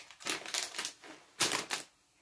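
Small plastic snack pouches crinkling in two short bursts as they are handled.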